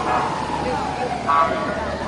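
People's voices outdoors, with a long high tone that falls slowly in pitch across the moment and a short higher sound about a second and a half in, as an SUV hearse rolls slowly past.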